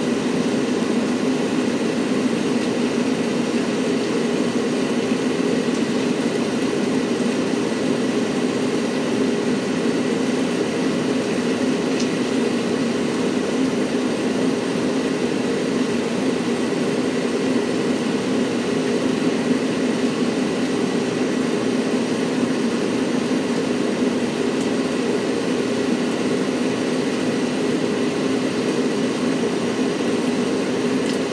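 Steady mechanical hum with a constant hiss and a faint high whine, unchanging throughout, like a running ventilation fan or air conditioner.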